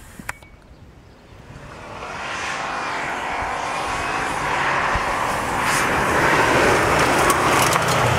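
Subaru Impreza WRX's EJ20 flat-four engine driven hard as the rally car comes closer, faint at first and then rising steadily in loudness to its nearest point near the end.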